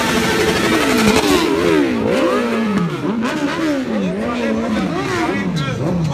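Sport motorcycle engine revved again and again, its pitch rising and falling several times in quick blips.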